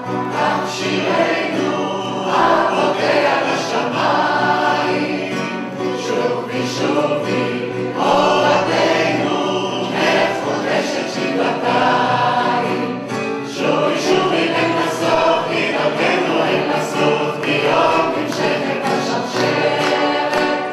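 An audience singing Hebrew folk songs together in a community sing-along, many voices at once, loud and continuous.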